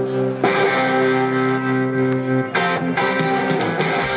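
Live band music led by electric guitar, playing held chords that change about half a second in and again around two and a half seconds in.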